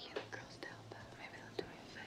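A woman whispering softly close to a man's ear, faint and breathy, over a low steady hum.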